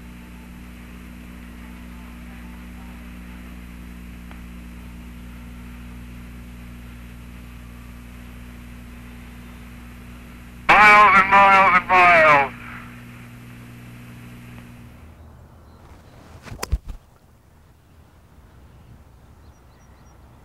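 Hiss and steady hum of the Apollo 14 lunar-surface radio link, sounding narrow and thin as radio does. About 11 seconds in it is broken by a short burst of a voice over the radio. The hiss drops out about 15 seconds in, followed by a couple of sharp clicks and a faint, quiet background.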